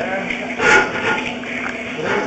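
Indistinct talking, with a sharp click at the very start and the loudest stretch about three-quarters of a second in.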